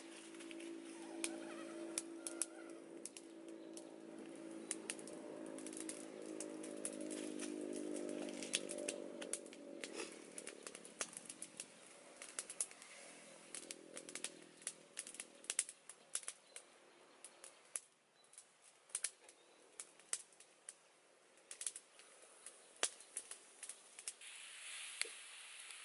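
A small wood fire under a wok crackles with sharp, irregular clicks while cassava leaves are stirred in the pan with a stick. A steady low hum runs under the first half and fades out by about the middle.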